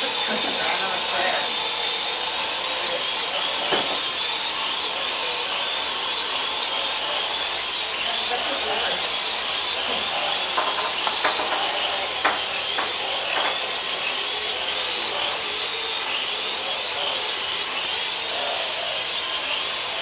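Parrot AR.Drone quadcopter hovering: the steady high-pitched whine of its four electric motors and propellers, wavering slightly as the rotor speeds adjust. A few sharp knocks come around the middle.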